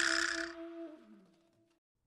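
A static-like hiss from an editing sound effect over a steady held tone, fading out within about a second.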